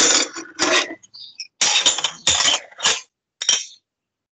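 Dishes and cutlery clinking and clattering in a string of irregular bursts, picked up by a participant's open microphone on a video call and cut into pieces by its noise gate; the lecturer takes it for someone having breakfast.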